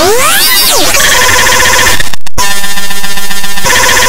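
Loud, heavily distorted electronic sound effects: pitch glides sweep down and back up in the first second, then a dense, clashing clamour that cuts out briefly about two seconds in and comes back.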